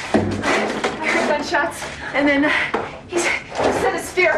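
Human voices in short bursts throughout.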